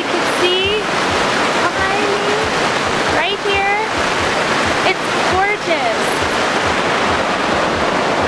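Rushing water of a mountain creek cascading over rocks, a steady loud hiss, with a woman's voice in short bursts of talk and laughter over it.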